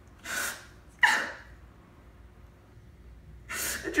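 A man crying: a shaky breath, then a sharp, loud sobbing gasp about a second in, and another in-breath near the end.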